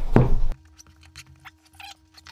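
Faint, light scratches and small clicks of a thin blade slitting the plastic shrink-wrap along a smartphone box's edge, over a faint steady hum.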